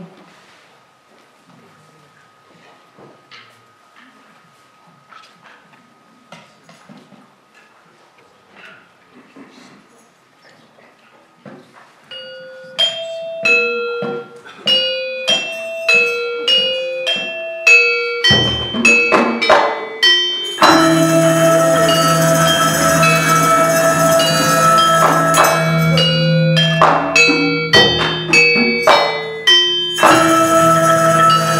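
Gamelan music starting up: after about twelve seconds of quiet with faint clicks, a single gamelan mallet instrument plays a slow melody of separate struck, ringing notes. A low stroke follows, and about 21 s in the full ensemble comes in loud, with a steady low gong hum under the bronze instruments.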